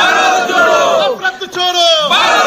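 A group of men loudly shouting a political slogan together, one shouted phrase after another.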